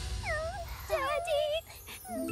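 A cartoon character's voice whimpering without words: a short falling cry, then a few wavering cries about a second in.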